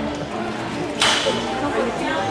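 A single sharp smack about a second in, fading quickly, over background chatter of voices.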